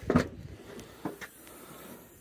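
Suzuki Swift hatchback tailgate being opened: a short clunk from the latch release just after the start, then a second, softer knock about a second later as the boot lid lifts.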